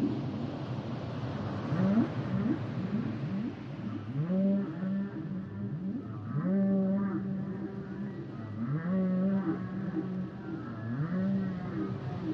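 Humpback whale song: a few short upward whoops, then four repeated calls about two seconds apart, each sweeping up into a long held low moan with overtones.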